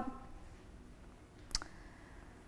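Quiet room tone with a single short, sharp click about one and a half seconds in.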